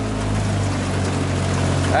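Outboard motor of a small motor launch running steadily, a low even hum, with a hiss of water and wind over it.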